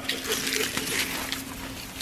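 Dry roots and crop residue rustling and crackling as they are pulled by hand from a tillage implement's shank, over a faint steady hum.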